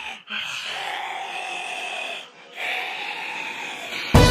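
A breathy, hissing sound effect in two long stretches, broken by a short gap just past the middle.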